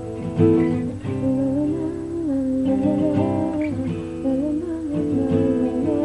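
Acoustic guitar played, with a woman humming a wordless melody over it that glides up and down from about a second in.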